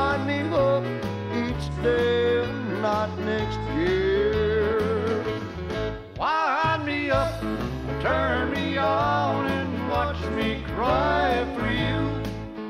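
Country music instrumental break: a lead instrument plays bending, sliding phrases over a bass line that steps from note to note.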